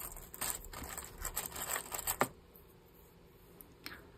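Rustling and light clicks of hands handling a paper craft tag and a small lace-covered fabric piece with a pin, for about two seconds, with one more click near the end.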